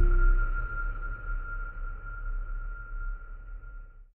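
Closing logo sting: a deep bass hit with one steady high tone held over it, both fading away over about four seconds.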